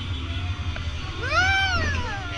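A single high-pitched cry that rises and falls, about a second long, in the second half, from a rider on a swinging pirate-ship ride, over a steady low rumble from the ride in motion.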